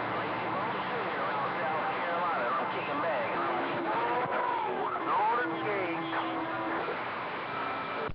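CB radio receiving: steady band hiss and static from the speaker, with faint, garbled distant voices drifting in and out and a steady whistling tone in the middle stretch.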